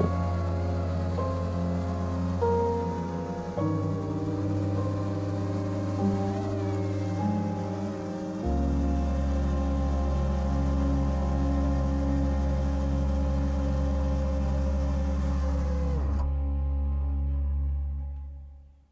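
Slow ambient background music: sustained chords over a deep held bass that shifts note twice, the upper parts dropping out near the end as it fades.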